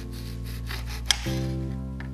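Background music with sustained chords that shift about a second and a half in. Over it, a knife cutting through an orange on a glass cutting board: a short rasp of the blade through the rind, then one sharp click of the blade meeting the glass a little after a second in.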